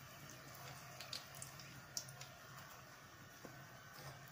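Faint sizzle of oil under a stuffed egg flatbread frying in a nonstick pan, with a few light clicks about one to two seconds in.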